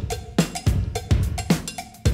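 Drum-machine beat with no vocals: deep kick drums that drop in pitch, a two-note cowbell and sharp snare or clap hits in a steady funk rhythm.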